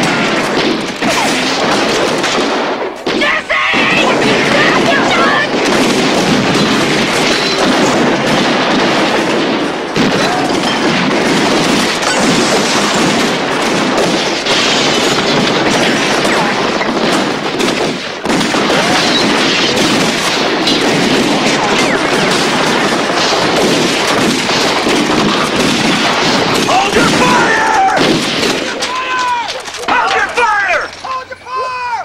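Sustained gunfire from many guns, shots overlapping into a dense, continuous volley.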